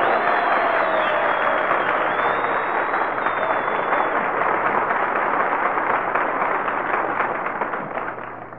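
Live studio audience applauding steadily, with a couple of whistles in the first few seconds; the applause thins out near the end. It is heard through the narrow, dull sound of a 1942 radio broadcast recording.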